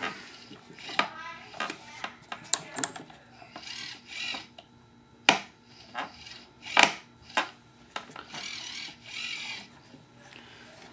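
Parts of an RC V-22 Osprey model being fitted together by hand: the rack gear being worked into its conversion fairing, giving irregular sharp clicks and knocks with short scraping rubs in between.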